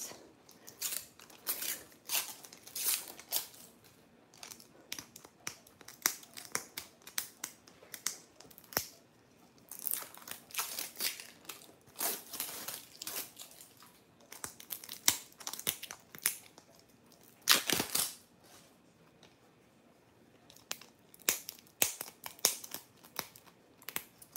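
Plastic wrapping of a Zuru Mini Toy Brands surprise capsule being torn open and crinkled, a run of sharp crackles and rips; the loudest rip comes about two-thirds of the way through, followed by a brief lull.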